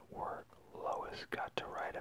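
Whispered speech: a person softly reading a page aloud.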